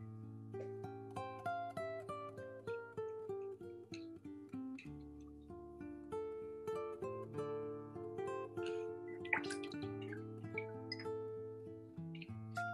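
Background music: acoustic guitar playing a gentle melody of plucked notes.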